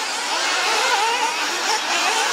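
Several 1/8-scale nitro RC buggy engines running at high revs, their buzzing pitch rising and falling as the cars accelerate and lift off.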